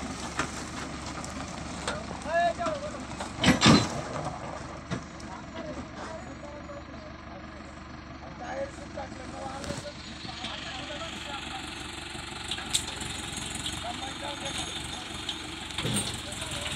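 Farm tractor running as it tows two trailers loaded with sugarcane slowly past, the engine and rolling trailers giving a steady rumble. A loud short burst of noise stands out about three and a half seconds in.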